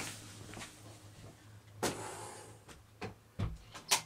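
Handling noises from boxes and packaging being moved about: a sharp click a little under two seconds in, a couple of soft knocks and a dull thump, then another sharp click near the end, over a low steady hum.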